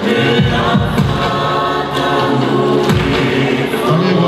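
A Tongan choir singing a tau'olunga dance song, many voices holding chords together, with several deep thumps through the singing.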